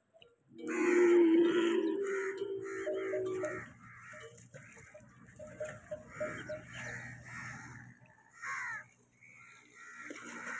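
Dromedary camels calling: one long, low bellow lasting about three seconds near the start, then quieter broken calls from the herd and a short call near the end.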